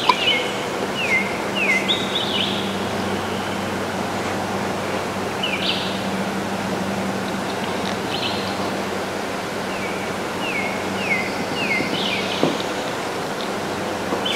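A songbird singing phrases of short, down-slurred whistled notes, repeated in runs near the start and again about ten seconds in, over a steady background hiss.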